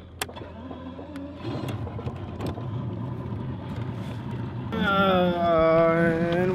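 Bass boat's outboard motor running as the boat gets underway, its hum and the rush of water and wind building about a second and a half in and growing louder. Music comes in near the end.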